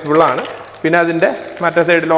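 A man talking, with a light crinkle of a plastic packet being handled under the speech.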